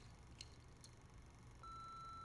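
Answering-machine beep: a single steady high tone beginning near the end, after two faint clicks in near silence.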